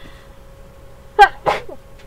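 A person sneezes once: a short voiced 'ah' intake about a second in, then the sharp 'choo' burst straight after.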